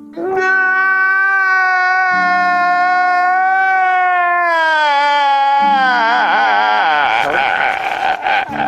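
A man crying loudly in one long wail. Its pitch slides down about five seconds in, and it breaks into choppy sobbing near the end.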